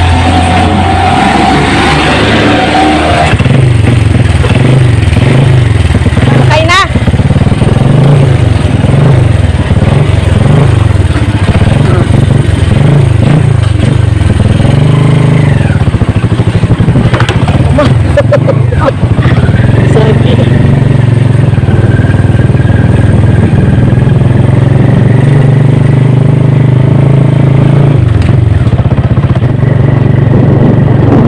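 Small motorcycle engine running close by. It holds a steady note for the first few seconds, then revs and runs on as the bike rides off, its pitch rising and falling with the throttle.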